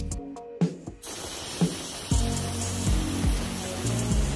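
Steady hiss of gas or air rushing from a hose-fed brass nozzle aimed at oak bark, cutting in suddenly about a second in, over background music.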